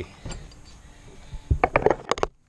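Metal hand tools clinking and clattering on a cluttered workbench as they are handled: a quick run of sharp clinks about one and a half seconds in, after a quiet start.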